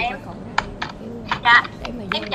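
A handful of scattered keystrokes on a computer keyboard, short separate clicks, with a woman's voice briefly in the middle.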